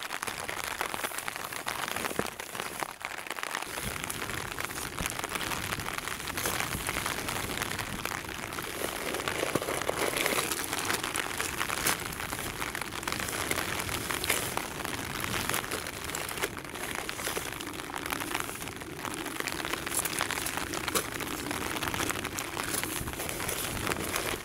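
Rain pattering steadily on the fabric of a small one-person tent, heard from inside, with the crinkle of plastic food packets being handled.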